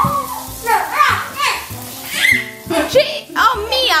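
Small children's high-pitched voices as they play, with a sharp rising squeal near the end, over background music.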